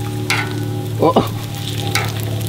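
Thick-cut bacon sizzling steadily in its rendered fat on a Blackstone steel flat-top griddle set to medium-low heat, with a steady low hum underneath.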